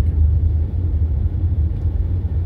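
Steady low rumble of road and engine noise inside the cabin of a moving vehicle.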